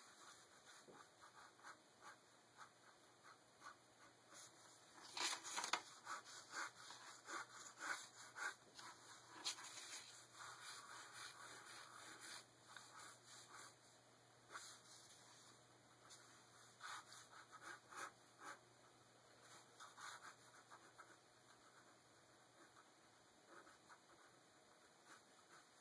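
Faint scratching of a ballpoint pen on paper in quick, irregular sketching strokes.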